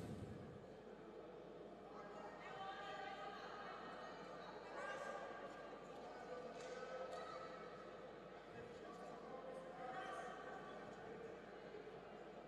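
Faint voices of people calling out, a few drawn-out shouts about two, five and ten seconds in over low background murmur.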